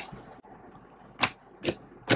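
Glue-based slime being kneaded and pressed by hand, giving sharp wet clicking pops as air trapped in the slime bursts: one at the very start and two more in the second half.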